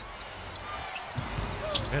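Basketball dribbled on a hardwood court, with a few sharp bounces near the end, over arena crowd noise that swells about a second in.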